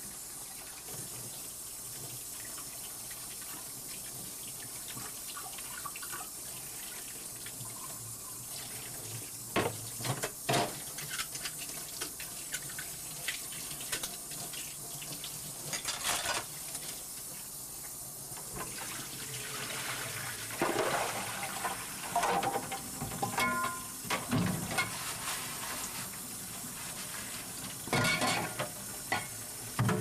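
Water running from a kitchen tap into a sink, with scattered knocks and clatter about a third and halfway through, a busier stretch of clatter in the later part, and another near the end.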